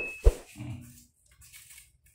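Two sharp knocks about a third of a second apart as ceramic floor tiles and plastic spacers are handled and set, followed by a brief low murmur.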